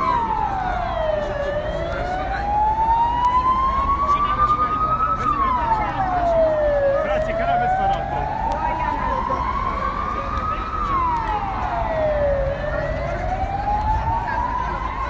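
An electronic siren wailing. Each cycle rises slowly in pitch for about four seconds, then falls quickly, and the cycle repeats three times, loud and steady.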